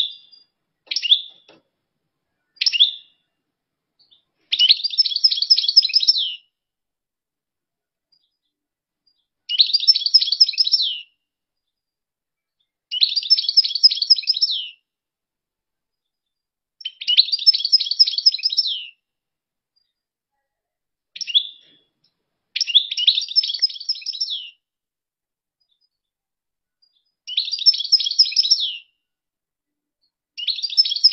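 European goldfinch singing: about six phrases of rapid twittering trills, each one to two seconds long, with pauses of a few seconds between them. A few short single call notes come in the first few seconds.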